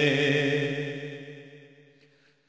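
A man's voice holding one long sung note at the end of a line of an Urdu naat, fading away smoothly to almost nothing.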